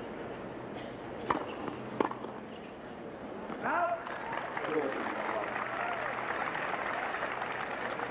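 Two sharp racket-on-ball strikes on a hard court, less than a second apart: a tennis serve and its return. A few seconds later a stadium crowd cheers and claps, with a shout among it, and the cheering swells and holds.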